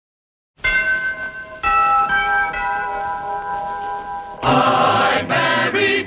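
Opening theme music of a 1950s TV sitcom. It starts with two held chords, changing after about a second. About four and a half seconds in, a louder full section with a chorus comes in, leading into the sung theme.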